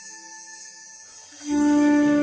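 Background music with held, sustained notes; about a second and a half in it gets louder as a new phrase begins with deeper notes.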